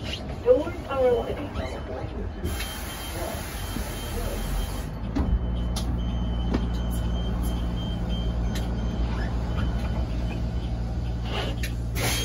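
City transit bus heard from inside the passenger cabin, with general cabin noise. About five seconds in, its drivetrain comes up to a steady low hum and holds.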